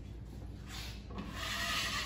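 A wide-blade decorating knife scraping over a plasterboard wall, spreading joint filler. The scraping is faint at first and grows louder and steadier from about a second in.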